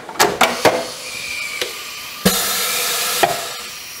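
A few sharp metal clatters as the red wire safety guard of a Morgan G-100T injection molding press is swung shut. About two seconds in, a loud hiss of air lasting about a second as the press's air-driven clamp cycles on the mold. The clamp height is set too high for the toggle to go over center.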